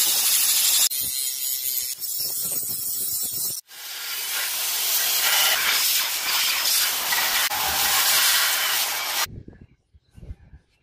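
Steel blade being power-ground: an angle grinder running along the metal, then, after a brief break about three and a half seconds in, the blade pressed against a running belt sander with a steady hiss. The grinding stops abruptly shortly before the end.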